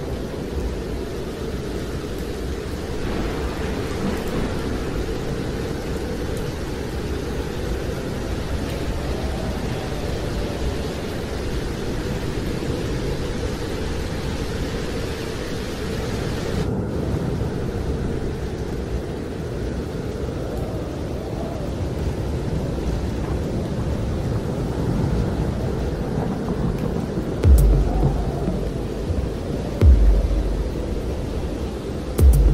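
Thunderstorm sound effect: a steady rushing noise like heavy rain with rolling thunder, then a loud, sudden thunderclap near the end.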